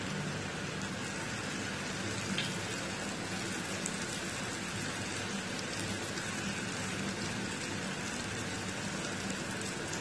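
Samosas deep-frying in hot oil in a pan: a steady sizzle with a few faint small pops.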